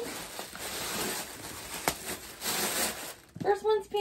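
Tissue paper and a plastic bag rustling and crinkling as they are handled, with a sharp click about two seconds in.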